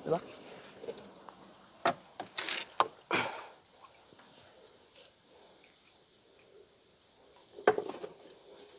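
Faint steady chirring of night insects, broken by a few brief sharp knocks: one a little under two seconds in, a short cluster just after, and one more near the end.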